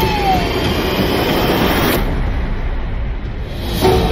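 Cinematic trailer sound design: a loud, dense rumbling swell with a brief falling tone near the start. It thins to a low rumble about halfway through and ends in a sharp hit just before the end.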